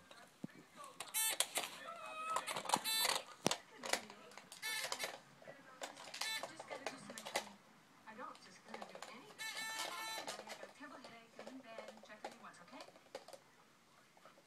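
Electronic game buzzer going off in a series of short, irregular bursts as a dog chews on it and presses its button.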